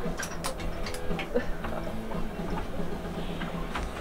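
A few sharp metallic clicks and clinks of harness carabiners and swing rigging being clipped and handled, several in the first second and a few more later, over a steady low hum.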